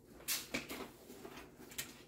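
Faint handling noise from gear being picked up: a few soft, short clicks and rustles, the clearest about a quarter of a second in and another just before the end.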